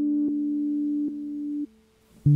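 Held synthesizer notes of a background music track, moving between a few steady pitches, then cutting off near the end.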